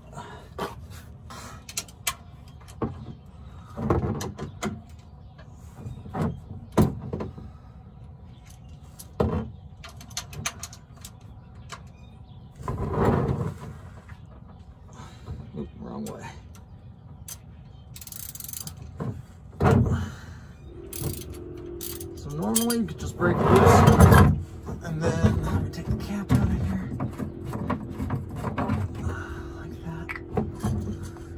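Scattered clicks and knocks of hand tools and a plastic oil drain pan as the drain plug of a Chevrolet Tahoe's oil pan is worked loose from underneath, with a few louder scuffling bursts. A steady low hum comes in about two-thirds of the way through.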